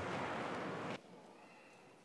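Congregation rising to its feet from the pews in a large church, a brief shuffle and rustle that cuts off suddenly about a second in, leaving faint room tone.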